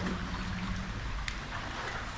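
Steady outdoor background noise beside a spring-fed bathing pool: a low rumble with faint water sounds, and a single short click just over a second in.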